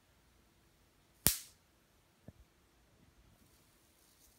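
A homemade negative-ion generator jammer on a 9-volt battery gives one sharp snap about a second in, then a much fainter click a second later.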